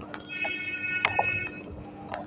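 A steady, high electronic tone sounds for about a second and a half, with a couple of short clicks as the relay's front-panel keys are pressed. A low electrical hum runs underneath.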